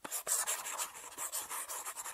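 A scratchy scribbling sound effect, a fast string of short rubbing strokes like writing, that starts abruptly.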